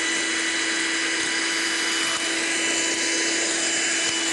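Hoover Handy Plus cordless handheld vacuum cleaner running steadily with its crevice tool fitted, sucking up crumbs along a floor edge: a constant motor whine over a rush of air.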